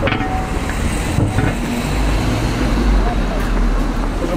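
Street ambience: steady traffic noise with a low rumble, and snatches of people talking.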